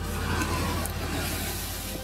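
Steady rushing noise of meltwater breaking through and pouring down a thawing permafrost face, with a low rumble under it, slowly fading toward the end.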